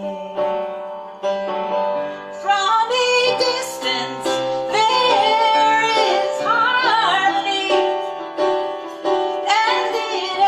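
A woman singing a slow ballad with piano accompaniment in a live performance. Held piano chords open the passage, and her voice comes in about two and a half seconds in, with vibrato on the long notes.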